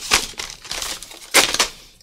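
Plastic gel pens clattering and rattling as they are rummaged through and spill out of their basket, in two short bursts, the second about halfway through.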